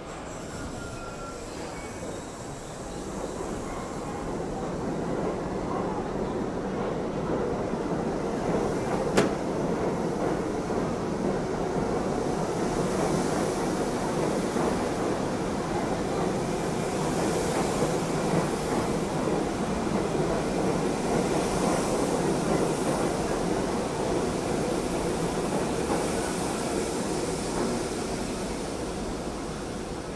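R68A subway train pulling out of the station and running past on the platform track. The sound of its wheels and motors builds over the first several seconds as it gathers speed, then holds steady, with one sharp click about nine seconds in, and eases near the end as the last cars pass.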